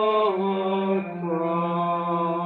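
Slow hymn music with long sustained notes over a steady low held note; the melody steps to a new note about a second in.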